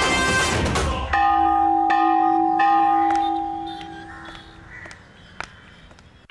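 A loud burst of music cuts off about a second in, and a temple bell is struck several times, its ringing tone holding on and fading away by about five seconds in.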